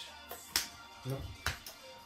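Sleeved trading cards handled and tapped down on the table: two short, sharp clicks, about half a second and a second and a half in.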